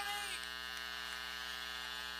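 Steady electrical mains hum with a buzzy edge, its level unchanging, after a voice breaks off in the first moment.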